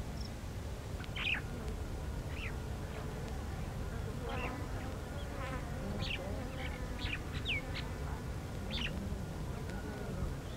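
Open-country ambience: insects buzzing over a steady low rumble, with short bird chirps scattered through it.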